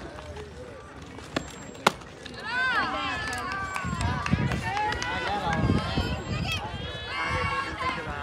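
Two sharp knocks of a softball bat meeting the ball, about one and a half and two seconds in, the second louder. Then spectators shout and cheer in high voices as the batter runs.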